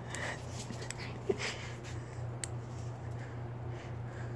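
Faint snuffling of a pug puppy sniffing at the ground, a few short puffs of breath, over a steady low hum, with a light tick about halfway through.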